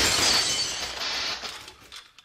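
A jammed overhead garage door opener shorting out: a loud shattering crash with crackling sparks and a thin high metallic screech early on. It all dies away over the last half second.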